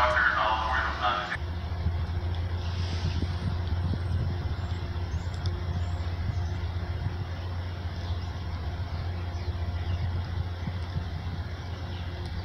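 A steady low rumble with a faint background hiss. A voice is heard talking over the first second or so.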